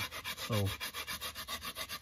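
Small hand rasp scraping along a soft cottonwood carving in quick, even back-and-forth strokes, several a second.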